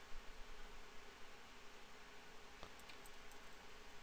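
Faint steady room hiss with a few light computer mouse clicks between two and a half and three and a half seconds in.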